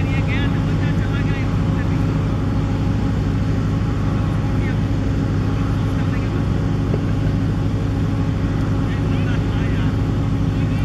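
A steady, unchanging low engine drone, with faint voices in the distance.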